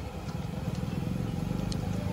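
A motor vehicle engine running close by, a steady low rumble that slowly grows louder.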